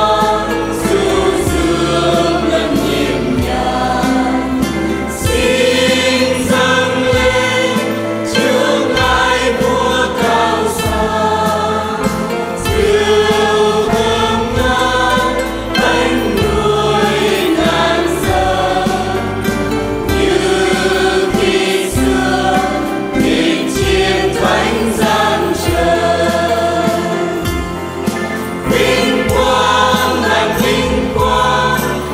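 Mixed choir of men's and women's voices singing a Vietnamese Catholic hymn in parts, with keyboard accompaniment.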